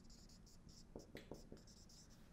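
Faint scratching and squeaking of a marker writing on a whiteboard, in a run of short separate strokes.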